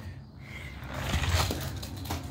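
Toy monster truck rolling down an orange plastic toy track: a rattling rumble that grows louder about halfway through.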